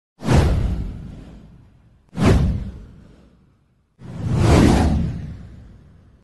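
Three whoosh sound effects from an animated channel title intro. The first two hit suddenly and fade over about a second and a half. The third swells up and then fades away.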